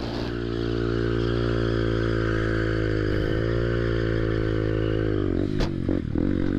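Honda Grom's single-cylinder engine running steadily at low revs. Near the end the pitch drops with a sharp click, and then it starts to rise.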